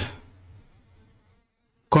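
Pause in speech: faint low hum and hiss from the recording fade away to silence, with the voice breaking off at the start and coming back near the end.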